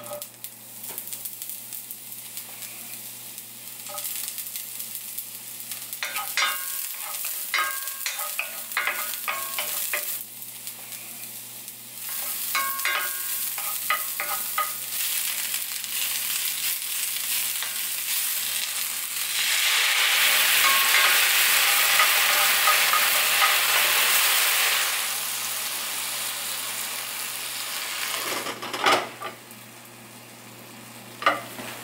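Sweet potato leaves and vegetables sizzling as they are stir-fried in a hot cast-iron skillet, with a wooden spatula clicking and scraping against the pan in bursts. The sizzle swells to its loudest for several seconds a little past the middle, then settles back.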